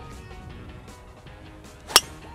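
A driver striking a golf ball off the tee: one sharp, loud crack near the end.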